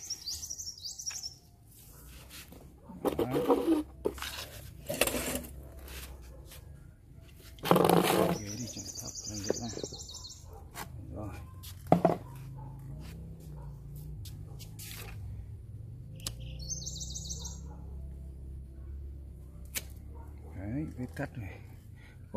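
A small songbird gives short, high chirping phrases three times: at the start, about eight seconds in, and about sixteen seconds in. Between them come voices and a sharp knock about twelve seconds in.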